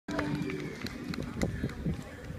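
People talking, with several scattered knocks and a brief steady tone near the start.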